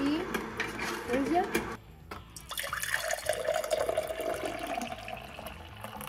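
A vertical slow juicer runs while green juice streams from its spout into a glass, with a steady filling sound from about halfway through.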